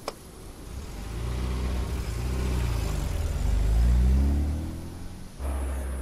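Vintage convertible car's engine accelerating, its pitch climbing, dropping once at a gear change, then climbing again, loudest a little before four seconds in. Near the end it switches suddenly to a steady low rumble.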